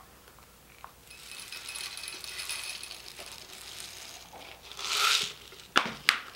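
Small metal pepper-grinder mechanism parts being handled on a wooden workbench: a few seconds of metallic scraping and rattling, a louder rattle about five seconds in, then a sharp knock as a piece is set down near the end.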